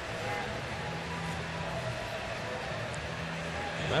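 Steady murmur of a ballpark crowd, many distant voices blending into an even hum with no single loud event.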